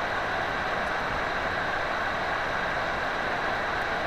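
Steady fan noise with a faint high tone running through it, picked up by the HDZero goggle's built-in microphone, the sound of the goggle's own cooling fan.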